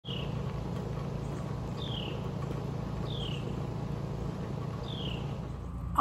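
A bird calling four times, each call a short whistle falling in pitch, over a steady low rumble.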